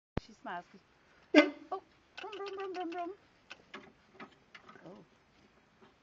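Short vocal sounds: a click, a brief "oh", a loud sharp cry, then a held, wavering note lasting about a second, followed by scattered faint short sounds. No engine is running.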